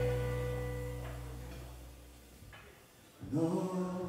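Live blues band: a held chord with its bass note rings out and fades away over about three seconds, then the music comes back in near the end.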